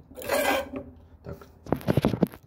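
Handling noise of a phone camera as it tips over and is grabbed: rubbing and scraping against the microphone, then a few sharp knocks near the end as it falls.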